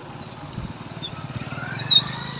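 Tractor diesel engine running with a low, rapid, even chugging, with a short high chirp near the end.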